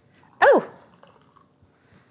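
A single short, high-pitched cry about half a second in, falling steeply in pitch.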